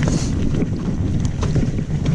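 Wind buffeting the microphone over the rumble of mountain bike tyres rolling down a dirt trail strewn with dry leaves, with a few short rattles and clicks from the bike as it goes over bumps.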